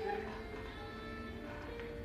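Low steady hum with a few held tones from the electric gearmotor driving the cheese vat's stirrer.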